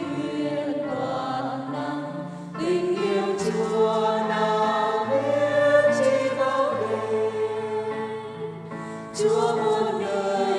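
Choir singing a slow hymn in held notes, with a new phrase beginning about two and a half seconds in and again near the end.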